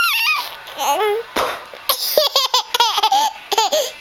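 A toddler laughing: a high-pitched laugh at the start, then a run of short, quick laughs in the second half.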